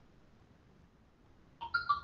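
Faint room tone, then near the end a short computer notification chime of three quick stepped notes, the middle one highest.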